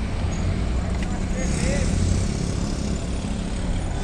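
Street traffic noise: a steady low rumble of vehicle engines, with a motorcycle riding past.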